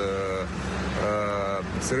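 A man's voice holding two drawn-out hesitation vowels, each about half a second, over the steady low hum of an engine running.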